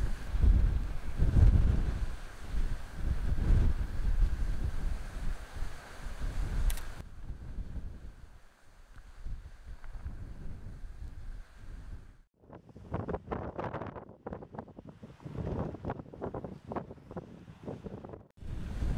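Wind buffeting the microphone in heavy low gusts, cutting off abruptly about seven seconds in. A fainter rushing noise follows, rising and falling irregularly over the last few seconds.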